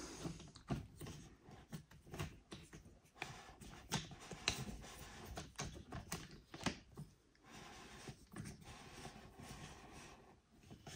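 Faint handling noise: scattered light clicks, ticks and rustles, with a few sharper ticks standing out among them.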